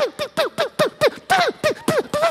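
A man vocally imitating an arcade spaceship firing: a rapid string of short 'pew' shots, about five a second, each dropping in pitch.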